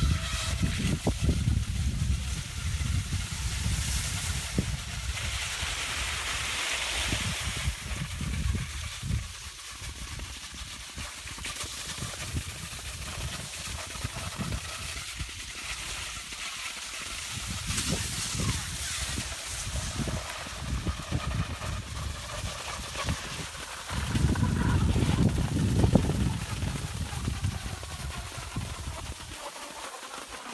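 Low rumble of wind on the microphone, strongest in the first eight seconds and again near the end, over the hiss of cross-country skis sliding in groomed snow tracks.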